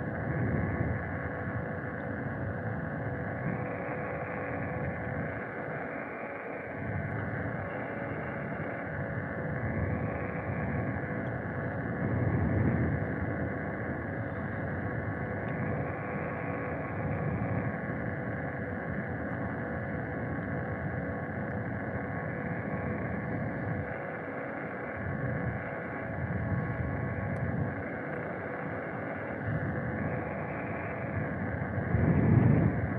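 Steady motor hum with several fixed tones while travelling, over low wind rumble that gusts on the microphone, strongest about twelve seconds in.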